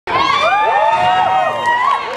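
A crowd cheering and shouting, many voices overlapping.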